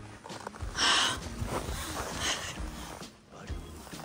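A gloved hand swiping through powdery snow on a car roof: short brushing swishes, the loudest about a second in and a softer one a little after two seconds.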